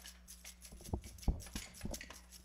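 Children's hand percussion played unevenly: about four scattered low thumps, the loudest a little past one second in, over faint, scattered tambourine jingles.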